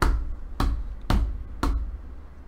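Four sharp knocks, evenly spaced about half a second apart, each with a deep thud.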